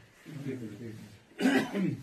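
A man's low voice, then a single loud cough about one and a half seconds in, close to the microphone.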